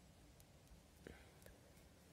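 Near silence with a few faint, light ticks of metal knitting needles being worked.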